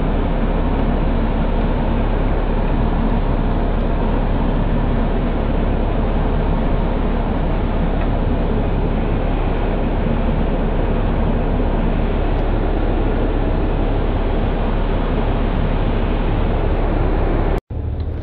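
Steady engine and road noise inside the cab of a charter motor coach on the move, with a low engine hum underneath. The sound cuts out for an instant near the end.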